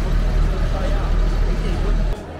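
Steady low rumble of city street traffic with a large vehicle engine running, and faint voices over it.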